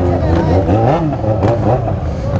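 Motorcycle engine running at low revs, a steady low hum, with voices over it.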